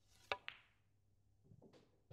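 Snooker balls clicking during a soft stun shot: two sharp clicks about a fifth of a second apart, a third of a second in, then a few faint knocks near the end.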